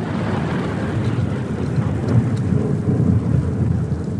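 Thunderstorm sound effect: a continuous low rumble of thunder with a fainter hiss above it.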